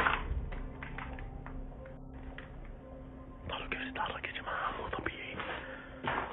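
Low whispering voices in a dark room, with a sharp click right at the start and scuffing, rustling noise in the second half.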